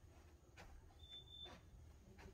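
Near silence: faint room tone with a couple of soft footsteps and a brief faint high beep about a second in.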